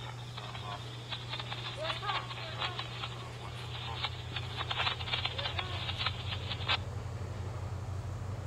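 MARC commuter train's diesel locomotive approaching: a steady low engine drone that grows a little stronger in the second half, with a run of sharp clicks in the middle and faint voices.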